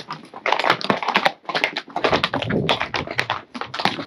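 Horses' hooves clopping irregularly on a cobblestone trail, with a low rumble through the second half.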